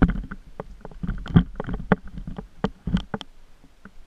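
Mountain bike rattling and knocking as it rolls over a rough dirt trail: irregular clicks and thumps several times a second over a low rumble, with heavier knocks about a second and a half in and again near three seconds.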